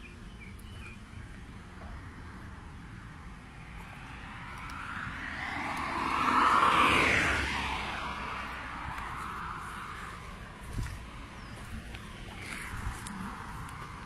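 A vehicle passing by, its noise swelling to its loudest about seven seconds in and then fading away, over a steady outdoor background.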